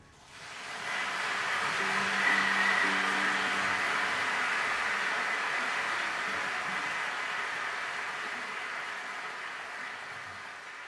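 Concert hall audience applauding. The clapping swells over the first two seconds, then slowly fades.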